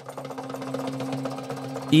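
A title-card transition sound effect: a rapid, even ticking clatter over a low steady hum, swelling louder throughout.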